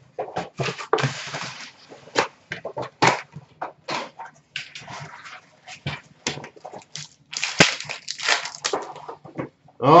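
Hockey card packs and their cardboard hobby box being handled: irregular crinkles, rustles and taps as the foil packs are pulled from the box and set down on a glass counter.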